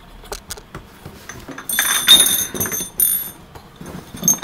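Glass bottles clinking against each other as they are handled in a cardboard box: a few light clicks, then a loud cluster of ringing clinks through the middle.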